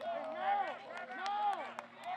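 Indistinct voices of players and coaches calling out on a football practice field, with a couple of brief sharp clicks and a faint steady hum underneath.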